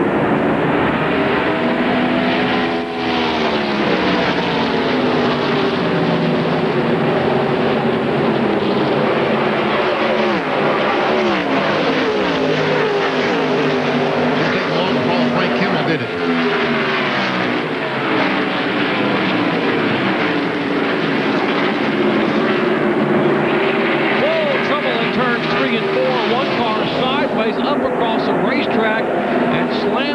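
A field of stock-car V8 engines running hard on the opening lap. Several engine notes overlap, and their pitch sweeps up and down as cars pass, most plainly about three seconds in and again around sixteen seconds.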